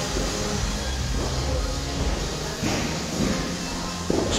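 Background music with short held notes over a steady low bed.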